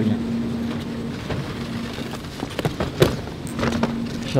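Airport baggage carousel running, its belt giving a steady hum and rumble. Near the end come a few clicks and a sharp knock as a hard-shell suitcase is grabbed from the belt.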